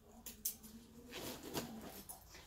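A backpack's zipper being pulled open in a few short scratchy strokes, with the fabric of the bag rustling under the hands.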